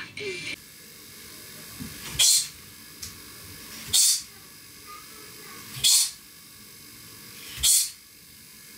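A girl's sharp, hissing exhales while shadowboxing, the breath forced out with each punch: four of them, a little under two seconds apart, each led by a faint thud.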